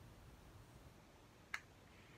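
Near silence broken by a single sharp plastic click about one and a half seconds in, as a PopSocket Pop Mini's top is pressed against its base; the broken top will not snap back on.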